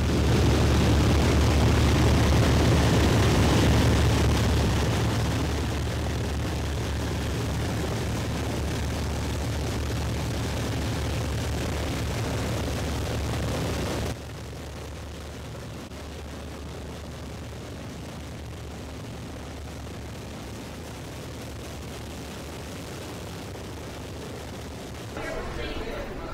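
Four radial piston engines of a Lockheed C-121A Constellation running together, a steady deep drone with propeller noise that eases a little after about four seconds. A little past halfway the sound drops suddenly to a quieter steady rumble.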